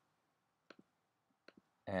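A few faint, sharp clicks of computer keyboard keys being typed, in two quick pairs, with quiet between them. A word of speech starts near the end.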